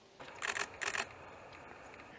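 A camera shutter firing in two short rapid bursts, about half a second apart, over a faint steady background hiss.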